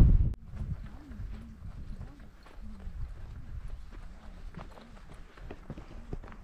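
Footsteps of a hiker walking on a mountain trail, an even rhythm of about two steps a second. A brief loud rush of wind on the microphone at the very start.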